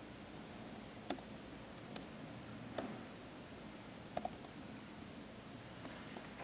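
A few sparse, sharp clicks of laptop keys being pressed, four of them a second or so apart, over a faint steady room hum.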